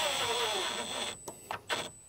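Battery-powered tool's motor running with a whine that falls steadily in pitch as it slows, then cutting out about a second in, followed by a few short clicks: the battery going flat.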